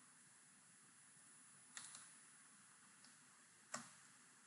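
Faint computer keyboard keystrokes in near silence: a quick cluster of clicks about two seconds in, a tiny tick, and a single sharper click near the end.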